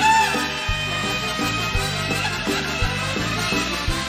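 Live band playing an instrumental passage with a steady beat and a walking bass line; a brief bright note bends in pitch right at the start.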